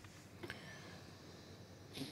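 Near silence: faint room tone in a pause between voices, with one small click about half a second in.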